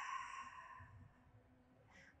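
A woman's long, breathy exhale, a soft sigh that trails off over about the first second, then near silence.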